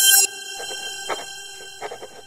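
Intro sound effect: a bright sustained chime tone that swells, drops off sharply just after the start, then holds softer under a few light taps, about a second in and again near the end.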